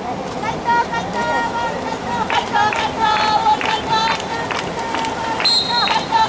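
Many voices shouting and calling during water polo play, short high-pitched calls overlapping and repeating, with a brief referee's whistle blast near the end.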